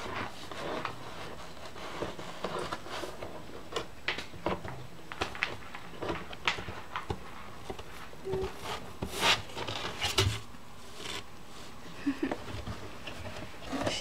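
Husky puppy chewing and tearing at a cardboard box: irregular crackles, scrapes and clicks of cardboard in his teeth, a few every second, with short pauses.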